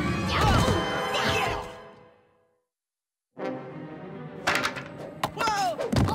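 Cartoon score with gliding tones fades out to complete silence for about a second. The music then returns, with several quick thumps from cartoon impact effects.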